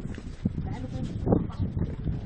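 Scattered voices of people talking in a walking group, with a few footsteps on stone paving and rumbling noise on the microphone.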